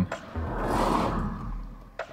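A car going past on the road, heard from inside a parked car's cabin: a rumble and rush of tyre noise that swells and fades over about a second and a half.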